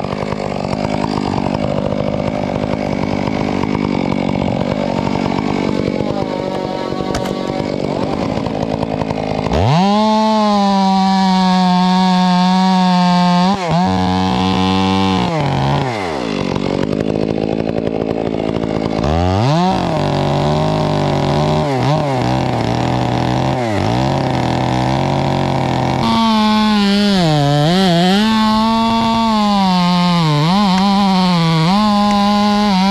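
Large gas chainsaw cutting into a redwood trunk. It runs rough for the first several seconds, then is revved to full throttle about ten seconds in. Its pitch sags and recovers repeatedly as it works in the cut and bogs under load near the end.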